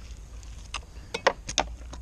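Tools and fish being handled on a plastic cutting board: a handful of short, sharp clicks and taps bunched in the middle second.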